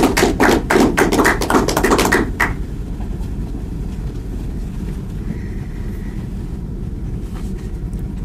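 A small audience clapping briefly, stopping about two and a half seconds in, followed by a steady low room hum.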